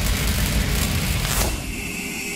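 Cinematic logo-reveal sound effect: a dense rumbling whoosh, a sharp hit about one and a half seconds in, then a steady airy drone with a high ringing tone.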